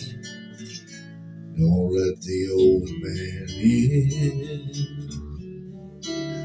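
Slow country ballad backing track between sung lines: an acoustic guitar picks a melodic fill that comes in about a second and a half in, after a quieter start.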